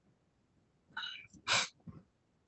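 A man sneezing once: a short pitched 'ah' about a second in, then one loud, sharp burst.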